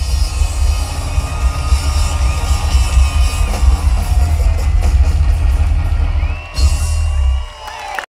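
A live rock band's loud closing passage, with heavy drums and cymbals under ringing guitar and crowd cheering. The music dips about six seconds in, comes back for one more loud hit, and cuts off near the end.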